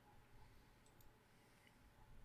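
Near silence with a few faint computer mouse clicks, two close together about a second in and one more soon after.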